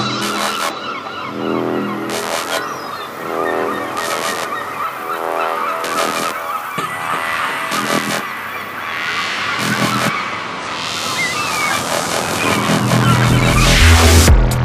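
Electronic dance track in a breakdown: a gritty, squealing synth texture with a sharp hit about every two seconds and little deep bass. A noise swell rises over the last few seconds and the bass returns near the end.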